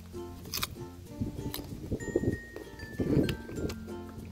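Background music, with a man biting and chewing a ripe guava close to the microphone; the chewing comes in short bursts, loudest about two and three seconds in.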